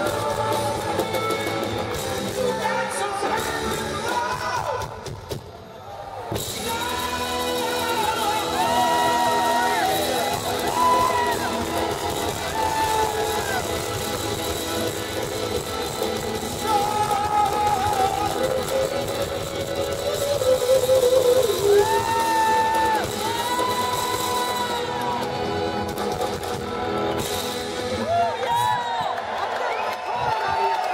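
Live rock band playing, electric guitar and bass, with a lead line of long held, bending notes above the band. The sound drops back briefly about five seconds in, then comes up again.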